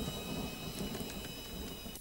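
A fire burning in a room: a soft, steady rush of noise with faint scattered crackles.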